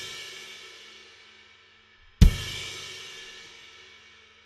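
A Sabian Anthology ride cymbal is crashed on its edge with the shoulder of the stick, giving the big washy "wa" of a crashed ride. It rings out from a hit just before, and a second hit about two seconds in brings a low thump and a long ring that fades away.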